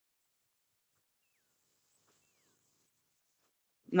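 Near silence, with two faint short falling chirps in the middle; the applause that was called for does not come through. A man's voice starts at the very end.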